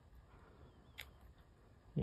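Near silence with a single light click about a second in, from a clear acrylic stamp block being lifted off the paper and moved to the ink pad.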